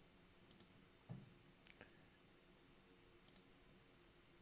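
Near silence with a few faint computer mouse clicks, and a short low thump about a second in.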